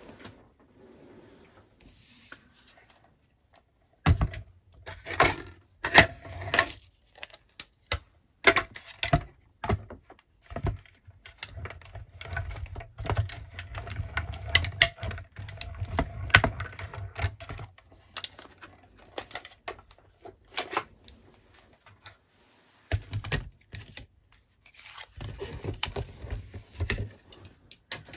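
A hand-cranked die-cutting machine being turned to roll a die-and-plate sandwich through it: a long run of clicks and knocks over a low rumble, starting about four seconds in and stopping a little past twenty seconds. Near the end, a few more knocks as the clear acrylic cutting plates are handled.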